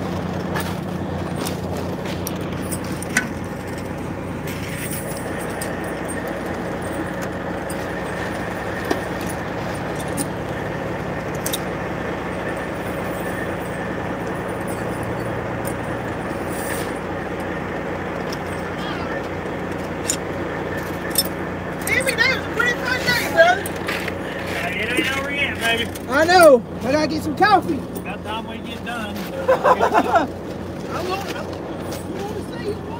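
Diesel engine of a heavy truck idling steadily, with a few light metallic clinks from tire chains being fitted to the wheels.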